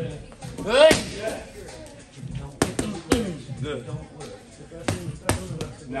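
Kicks and punches landing on Muay Thai strike pads and a belly pad: half a dozen sharp smacks at uneven intervals. The loudest comes about a second in together with a short shout.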